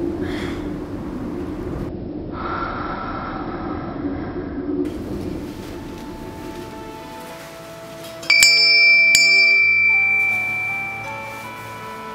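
A hanging metal door bell struck twice in quick succession about eight seconds in, its clear high ring fading away over about two seconds, over background music.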